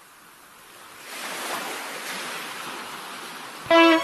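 Surf on a beach, fading in and swelling about a second in, then holding steady. Near the end the song's intro begins with plucked guitar notes.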